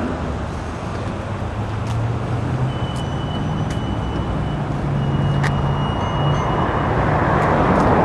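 Steady road traffic: passing cars' engines with tyre noise, and a low engine hum that rises and falls slowly.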